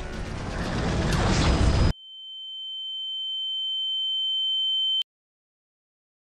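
Loud, dense trailer sound effects and score building up, cut off abruptly about two seconds in. Then a single steady high-pitched tone swells for about three seconds and stops dead.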